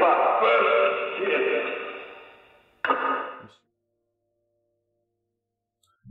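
Spirit box output: a thin, radio-like voice fragment, captioned as 'then say goodbye', mixed with radio noise and fading out over about three seconds. A second short burst follows about three seconds in, then the sound stops.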